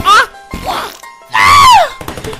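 A person's voice crying out over music: a short yelp at the start, then a louder, drawn-out cry near the end that rises and then falls in pitch.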